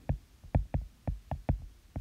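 Stylus tapping on a tablet's glass screen during handwriting: a run of about eight light knocks, roughly four a second.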